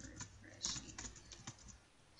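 Computer keyboard typing: a quick, faint run of keystrokes as a word is typed.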